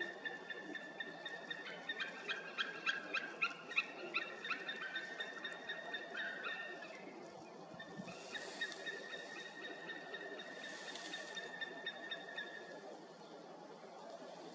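Eagle calling from a perch beside its nest: a rapid series of yelping notes, about three a second, that runs for several seconds and then stops. This is the female demanding to take over incubation from the male on the nest.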